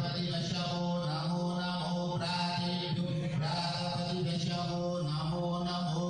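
A man chanting Hindu puja mantras into a hand microphone: a steady sung recitation in long held notes, without pause.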